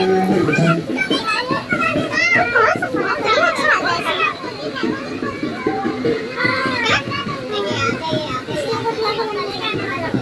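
Many overlapping voices of children and adults chattering and calling out at once, with the tail of dance music dying away in the first second.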